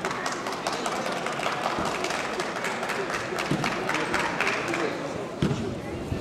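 Indistinct men's voices talking in a large hall, with many scattered sharp taps or knocks and one louder thump near the end.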